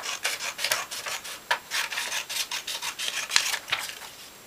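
Scissors cutting a sheet of paper: an irregular run of short snips, a few each second.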